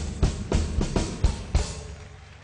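Live drum kit playing a run of snare and bass-drum hits, about four a second, ending in a cymbal crash about a second and a half in.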